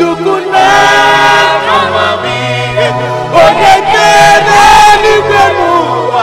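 Gospel praise song in Nigerian style: voices sing worship lines to God ("God of all wisdom", "the one that created the heavens and the earth") in long held notes over an instrumental backing with a bass line.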